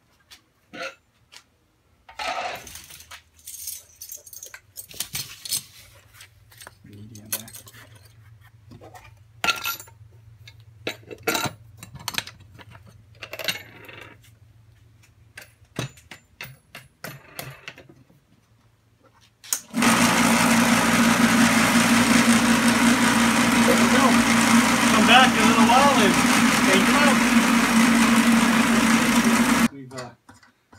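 Metal hardware pieces clinking and knocking as they are dropped into a vibratory tumbler bowl. About 20 s in, the vibratory tumbler switches on and runs loud and steady, a hum with the rattle of the hardware and corn cob media churning inside.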